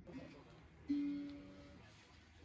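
A single guitar note, plucked once about a second in, ringing and slowly fading away.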